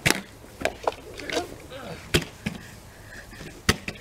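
Plastic water bottle being flipped, landing and being handled on grass: a string of sharp knocks and plastic clacks, the loudest at the start, about two seconds in and near the end.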